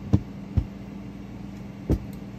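Three dull thumps as a deck of tarot cards is handled on a cloth-covered table: one just after the start, one about half a second in, one near the end. A steady low hum runs underneath.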